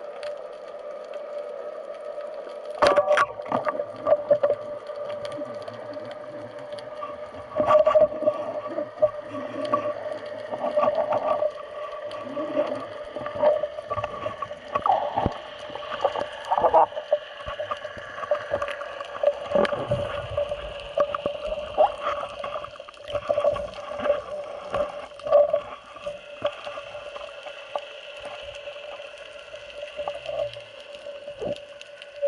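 Underwater sound picked up by a diver's camera: a steady hum with a couple of overtones, broken by irregular knocks and rushes from the diver moving in the water. The loudest of these come about 3 and 8 seconds in.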